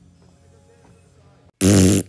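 Faint soundtrack music, then about a second and a half in a sudden, very loud, short burst of noise with a low buzzy tone in it, cut off abruptly.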